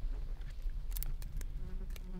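A flying insect buzzing close to the microphone, a steady drone. About a second in come a few sharp clicks of dry twigs being broken.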